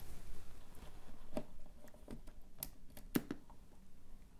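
A few faint, scattered clicks and taps from hands working the prop's wiring and power, about a second apart, over a quiet room.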